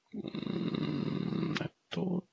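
A man's drawn-out hesitation hum, held on one steady pitch for about a second and a half as he trails off mid-sentence, followed by a brief click.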